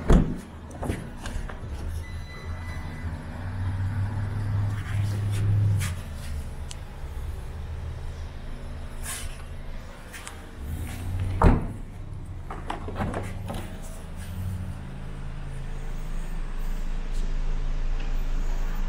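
Car doors of a 2018 Audi A3 shutting with a thud twice, once at the very start and again a little past the middle, over a steady low hum and camera handling noise.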